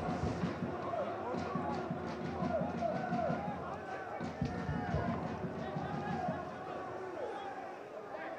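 Football stadium crowd: many voices of fans and players shouting and calling at once, blending into a fairly steady hubbub.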